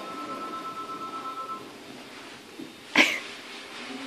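A dachshund puppy whining on a steady high note for about a second and a half, then a single short, sharp sound about three seconds in, the loudest moment.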